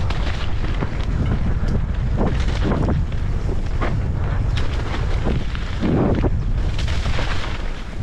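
Wind buffeting a helmet-mounted camera's microphone over a mountain bike's tyres rumbling on loose dirt and gravel during a fast descent. The bike rattles and knocks steadily on the rough trail.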